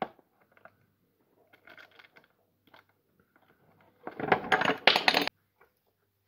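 Plastic-cased car hazard flasher relay and its unplugged wiring connector being handled, with a sharp click at the start. About four seconds in comes a loud clatter of about a second as the relay is set down on the hard panel.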